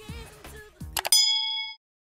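Subscribe-animation sound effect: a couple of sharp clicks, then a single bright bell ding about a second in that rings for about half a second and cuts off.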